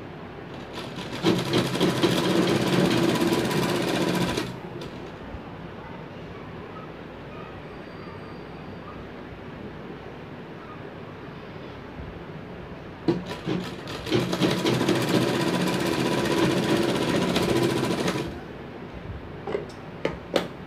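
Black domestic sewing machine driven by a bolt-on electric motor, stitching cotton fabric in two runs of a few seconds each, the second slightly longer, with a pause of about eight seconds between. Each run starts and stops abruptly as the motor is switched on and off.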